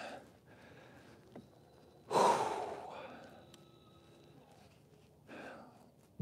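A man's heavy breath out, one long sigh about two seconds in that fades over a second, then a fainter breath near the end.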